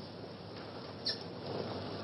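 Steady background hiss of an old recording, with one faint short sound about a second in.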